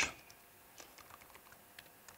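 Faint typing on a computer keyboard: a few quick, irregular key clicks.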